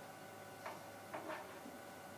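Quiet classroom room tone with a steady faint hum and three soft ticks a little past halfway.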